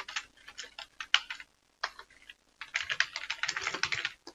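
Computer keyboard typing: a few scattered keystrokes, a short pause, then a quick run of keys in the second half.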